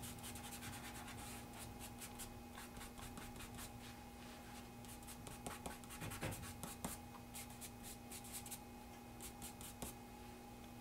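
Faint rubbing of fingertips blending charcoal on drawing paper: many short, quick strokes, a little louder about five to seven seconds in, over a steady faint hum.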